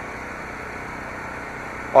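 Steady idle of a 2015 Ram 1500's 3.6-liter Pentastar V6, heard from in front of the truck.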